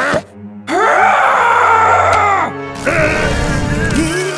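A cartoon character's voice in one long, loud drawn-out cry lasting about two seconds, its pitch arching, followed by a rougher, noisier vocal sound, with background music underneath.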